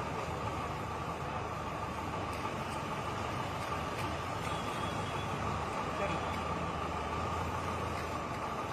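Steady road traffic noise: a continuous rumble and hum of passing vehicles.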